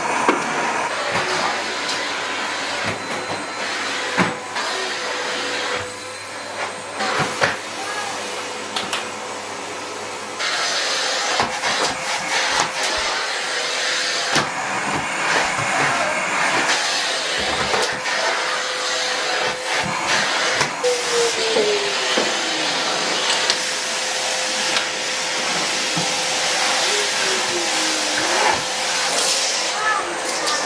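Canister vacuum cleaner running steadily, a continuous rushing noise with a steady motor tone.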